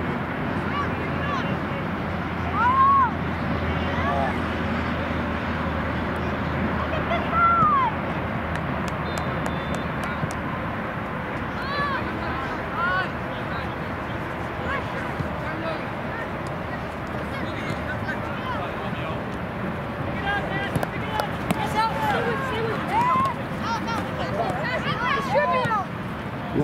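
Voices of players and spectators at a youth soccer game, short shouted calls too distant to make out, over a steady outdoor background noise. The loudest calls come about 3 and 7 seconds in, with a busier stretch of calls near the end.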